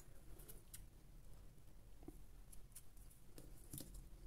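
Near silence: room tone with a low hum and a few faint, short clicks from handling a small piece of cold-porcelain clay.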